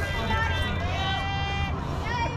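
High-pitched voices shouting and cheering around a softball field, one of them holding a long drawn-out call in the middle, over a steady low rumble.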